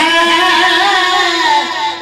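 A man's voice holding one long sung note of a Punjabi devotional kalam, the pitch wavering slightly near the end.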